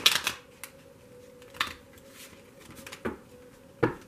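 A deck of tarot cards being shuffled by hand: short papery rustles of the cards every second or so, loudest at the start and near the end.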